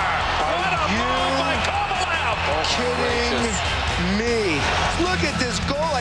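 Background music with a singing voice holding long rising and falling notes over a steady low bass line.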